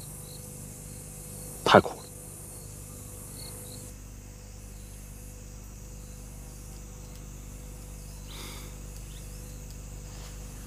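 Crickets chirping faintly in an outdoor ambience for the first few seconds, with one short voice sound, a brief utterance or sigh, a little under two seconds in; after that only a faint steady background remains.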